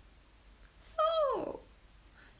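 A single meow about a second in, its pitch falling over about half a second.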